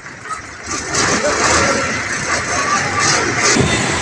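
Heavy cargo truck's diesel engine running under load as the truck moves across the ramp, growing louder about a second in.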